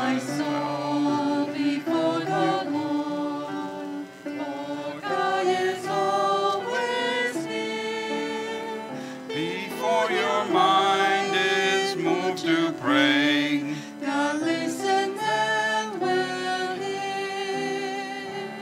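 A hymn sung by a small group of men's and women's voices with piano accompaniment.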